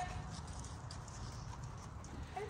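Faint hoofbeats of a horse cantering on sand arena footing.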